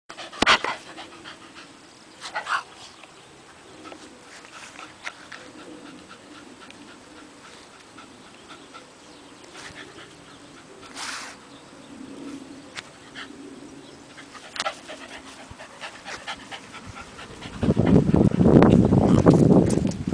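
Cavalier King Charles spaniel panting steadily, a sign the owner reads as the dog being hot, with a few scattered clicks. In the last two seconds or so a loud rushing noise covers the panting.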